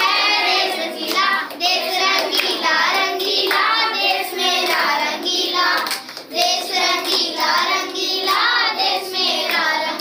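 Children singing a song, with hand claps.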